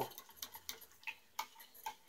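Faint, irregular light ticks, about seven in two seconds, of a stirring utensil tapping a small metal pot of hot liquid lure plastic on a hot plate.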